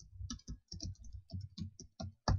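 Typing on a computer keyboard: a quick, even run of keystrokes, about five or six a second, as a user ID is typed in.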